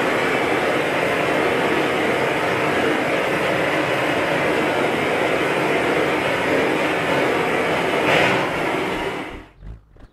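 Gas blowtorch flame burning with a loud, steady hiss as it chars a carved wooden bullroarer. The hiss cuts off suddenly about a second before the end, leaving a few faint low thumps.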